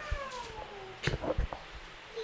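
A cat meowing once: one long call that falls in pitch. A few low knocks of the handheld microphone being handled follow about a second in.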